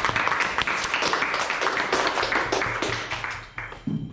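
A few people clapping their hands in quick, overlapping claps, fading out a little before the end.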